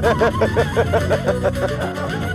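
Laughter in quick repeated bursts, about five a second, dying away after about a second and a half, over background music.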